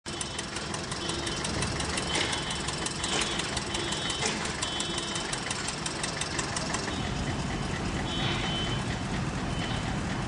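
An engine idling steadily, with a fast regular ticking over the running note.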